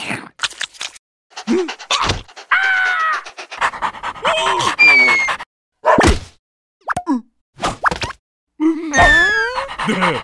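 Animated-cartoon sound track: wordless, squeaky, gibberish character voices that slide up and down in pitch, broken up by sharp slapstick whacks and a heavy thud about six seconds in.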